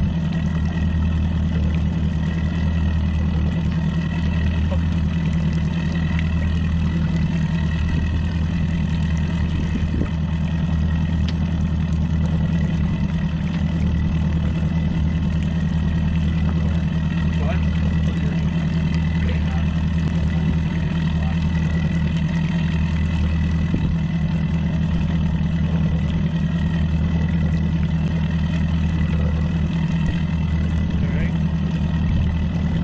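Mercury outboard motor running steadily at low speed, a constant low hum with no changes in pitch.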